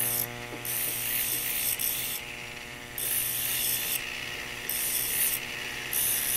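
Rotary tool spinning a small sanding disc against the sterling silver base of a bezel cup, smoothing its outside edge: a steady motor whine with a scratchy hiss that comes and goes as the disc touches the metal.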